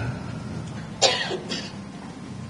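A person coughing: one sharp cough about a second in, followed by a smaller one half a second later.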